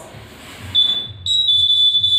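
Electronic buzzer of a homemade ultrasonic distance alarm on a smartphone stand, giving a steady high-pitched beep that starts just under a second in, breaks off briefly and then continues. It sounds because something has come closer to the ultrasonic sensor than the set safe distance.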